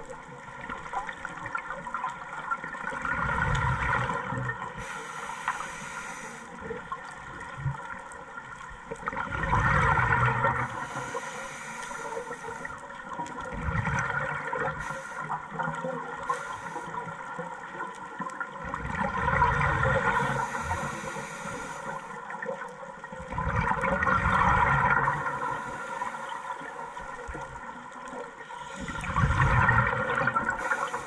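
Scuba regulator breathing heard underwater: a bubbling, rushing burst of exhaled air about every five seconds, with quieter stretches between.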